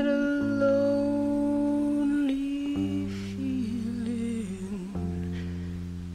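A slow song: a singing voice over held chords that change every second or two, the voice wavering on long notes in the second half.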